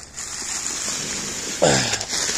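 Plastic wrapping over bags of pea gravel rustling and crinkling as a hand handles it, with a louder burst near the end.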